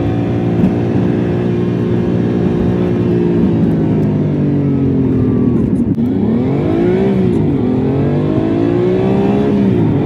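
Car engine heard from inside the cabin: steady cruising for about five seconds, easing off, then revving up twice with a drop in pitch between, as when pulling away through an upshift.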